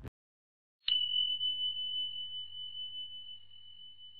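A single high bell-like ding about a second in, struck once and left ringing as one steady tone that slowly fades.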